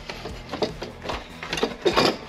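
Short, irregular clicks and knocks of hand-tool work on the car's body panel.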